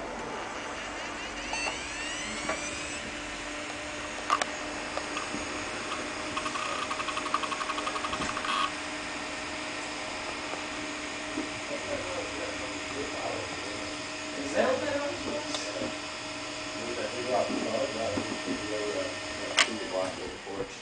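Open hard disk drive spinning up: a rising whine as the platters come up to speed, then a steady spindle-motor hum. Sharp clicks and a couple of seconds of rapid buzzing from the read/write head actuator mark erratic head movement, which the uploader puts down to a bad controller.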